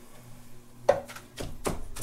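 A utensil knocking and scraping in a slow cooker's pot as cooked ground beef is stirred and broken up, a few sharp clicks starting about a second in.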